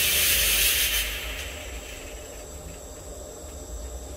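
Two vertical fog machines blasting jets of fog upward with a loud, steady hiss that stops about a second in.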